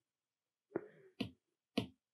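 Stylus tapping on a tablet's glass screen: three short, sharp taps about half a second apart, starting near the middle.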